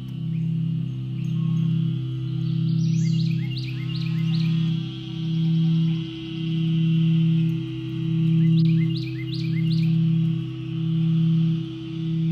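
Crystal singing bowls ringing a steady low chord that swells and fades about once a second. Over the bowls, two short runs of quick rising chirps, about five in a row, come about three seconds in and again near nine seconds.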